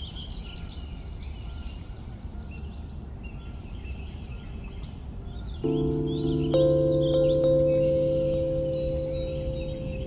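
Birds chirping and trilling over a steady low background noise. About six seconds in, soft ambient music enters with long held chords that slowly fade and become the loudest sound.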